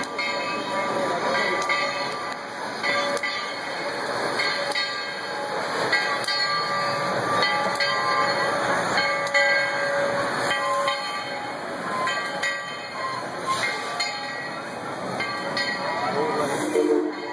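Dollywood Express coal-fired steam locomotive and its passenger cars running past close by, a steady mix of train noise with short tonal notes coming and going.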